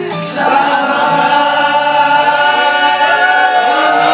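A group of young men singing together without instruments, holding long sustained notes in several voices.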